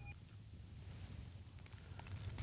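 Faint outdoor ambience on open lake ice: a low, steady wind rumble on the microphone, with no distinct event.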